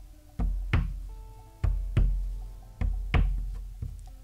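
A chunk of soft clay tapped against a tabletop on each side to block it into a rectangle: six dull thumps in three pairs, each thump followed by a low resonance of the table.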